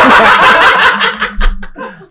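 Men laughing: a loud breathy burst of laughter that breaks into short chuckles and dies away near the end.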